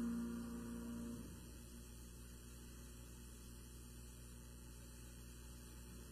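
A held chord on an upright piano, the end of a piece, that stops about a second in, followed by a faint steady low electrical hum.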